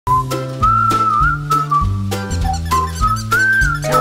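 Intro jingle: a whistled tune over a bass line that steps through notes about twice a second, with drum hits.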